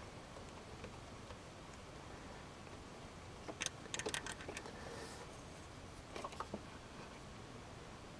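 Faint, short metallic clicks of a socket and bolt as the hold-down bolt of a 1993 Toyota Camry's transmission speed sensor is worked out by hand: a quick cluster of clicks about three and a half to four and a half seconds in, and a few more around six seconds.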